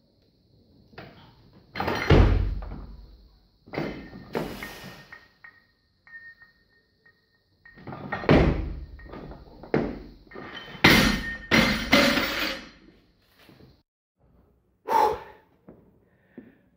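A loaded Olympic barbell during a clean and jerk with about 102 kg: iron plates clanking and heavy thuds as the bar is cleaned and jerked, then the loudest pair of thuds near the end as it is dropped onto the platform and bounces.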